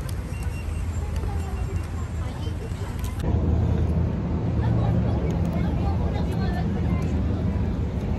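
A low, steady background rumble with faint voices chattering. About three seconds in the sound changes abruptly and becomes louder and deeper.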